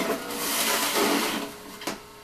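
Jack LaLanne electric centrifugal juicer running while beets are pressed down its feed chute with the plunger: a loud grinding rush for about a second as the blade shreds them, settling back to the motor's steady whir, with a sharp click near the end.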